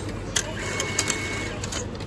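Ticket vending machine's banknote acceptor drawing in a stack of banknotes: a mechanical whir with a thin steady whine, punctuated by several clicks.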